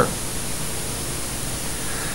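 Steady hiss with a faint high steady tone: the background noise of an old videotape recording.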